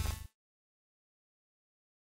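The end of a logo intro sound effect, which cuts off suddenly a fraction of a second in, followed by dead silence.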